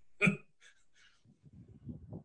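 One short vocal sound from a participant on the video call, a single brief syllable, followed by faint, irregular low crackling noise.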